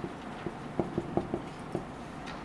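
Light, irregular clicks, about seven in two seconds, over a faint steady hum.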